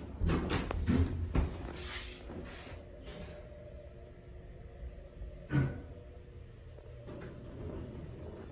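Dover Impulse hydraulic elevator cab with a steady low hum running through it. A quick run of clunks and rattles comes in the first second and a half, and a single louder knock about five and a half seconds in.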